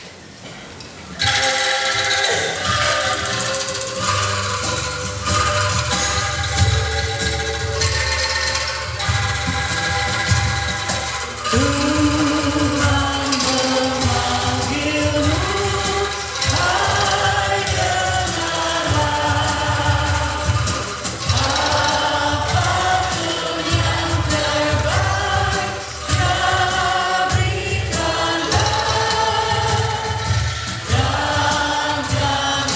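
A hymn sung by three women at microphones with a choir, accompanied by an angklung ensemble and a steady bass. The music starts about a second in.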